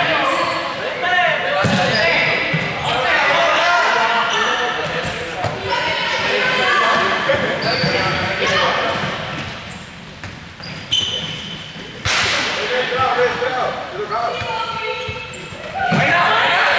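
Several players' voices calling out in a large echoing sports hall, with balls bouncing on the court floor. There is a quieter stretch partway through, then a sudden burst of noise about three-quarters of the way in.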